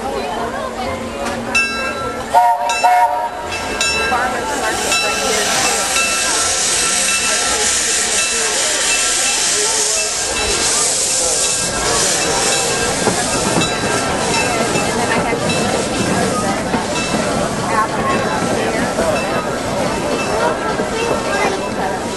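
Steam locomotive hissing steadily as it lets off steam, with a few short tones about two seconds in.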